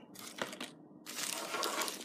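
A soft click about half a second in, then about a second of crinkling, rustling noise.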